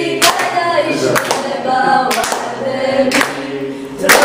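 A small group of voices singing a song together, with sharp hand claps about once a second.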